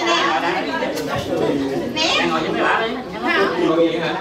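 Several people talking over one another: steady conversational chatter with no music.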